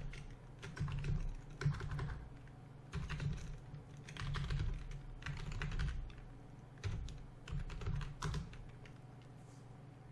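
Typing on a computer keyboard: keystrokes come in short, uneven bursts with pauses between, and stop about a second and a half before the end.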